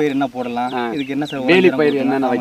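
A man talking in conversation, his voice continuing without a break.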